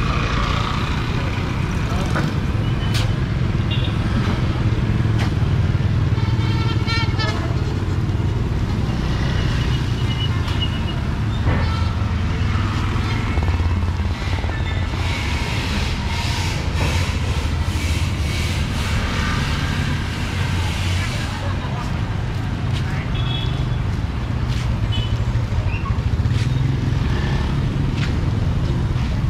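Busy street ambience: motorbike engines running and passing over a steady low traffic rumble, with people's voices in the background.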